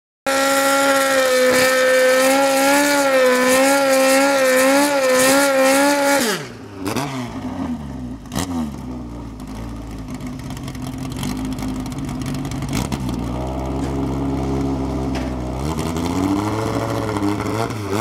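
Mk1 Ford Escort drag car's engine held at high revs for about six seconds while its rear tyres spin in a burnout. The revs then fall away sharply to a low rumble, and toward the end the engine is revved up again and blipped.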